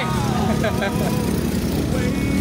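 Motorcycle engine running steadily while riding, with a voice speaking briefly in the first second.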